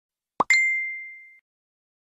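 Animation sound effect: a short rising pop, then a single high ding that rings and fades out within about a second.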